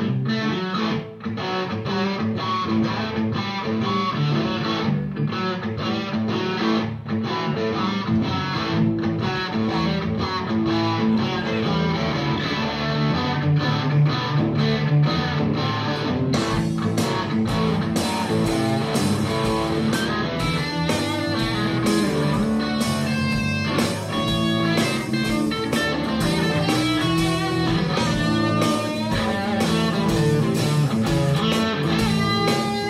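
Live rock band jamming, led by electric guitar played on a PRS, with guitar and bass. The sound turns brighter and fuller about halfway through, with a steady beat.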